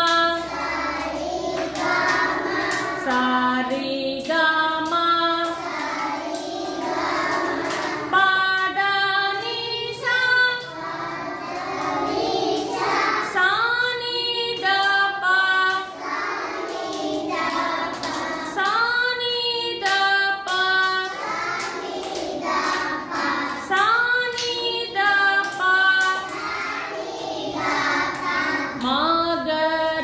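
Group of young children singing a song together.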